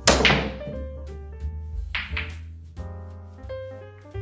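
A pool shot: a sharp crack of cue and balls colliding right at the start, then two quick ball-on-ball clicks about two seconds in. Piano background music plays throughout.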